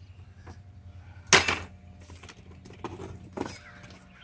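Tools being handled and set down: one sharp metallic clatter about a second in, then two lighter clinks near the end.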